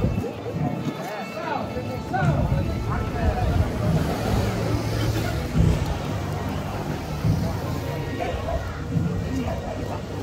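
Indistinct chatter of people in the street, with a motor scooter's engine running slowly.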